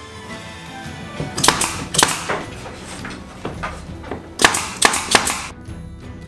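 Background music with a run of about ten sharp, loud bangs over it, coming in clusters, the loudest group between about four and a half and five and a half seconds in: impacts from work on the plywood body of a teardrop trailer.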